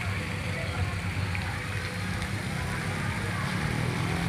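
Steady low rumble of outdoor background noise, with faint, indistinct voices in the distance.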